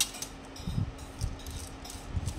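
Handling noise of a carbon fishing rod: a hand gripping and sliding along the blank, giving a few soft knocks and faint small clicks.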